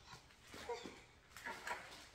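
Two short, faint vocal sounds from a baby, each falling in pitch, about halfway through and again near the end.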